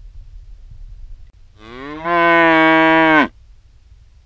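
A cow mooing once: a single loud call about a second and a half long that rises in pitch at the start, holds steady, then cuts off.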